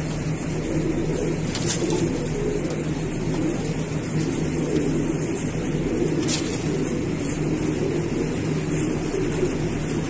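Domestic pigeons cooing continuously, their low warbling calls overlapping over a steady low hum.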